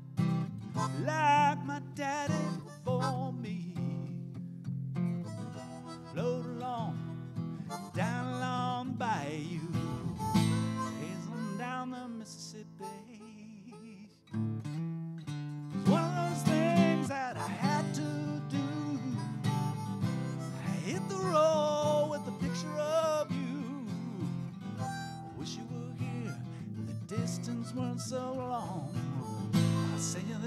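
Instrumental break: a harmonica cupped against a handheld microphone plays bending blues notes over a strummed acoustic guitar. A little past the middle the playing thins out and almost stops for a moment, then the harmonica comes back in louder.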